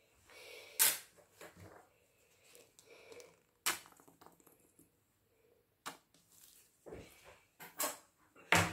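Handling noises at a worktable: four sharp clicks and knocks spread a few seconds apart, the first near the start the loudest, with soft scraping and rustling between them.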